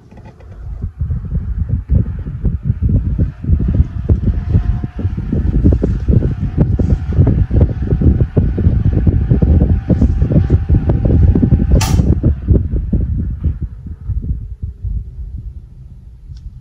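Britânia 240 desk fan running close to the microphone, its airflow buffeting it, over a faint motor hum that rises slowly in pitch as the fan speeds up. A sharp click comes about twelve seconds in, and after it the sound dies away.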